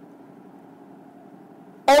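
Faint steady background hum in a pause between spoken lines, with a voice starting to speak near the end.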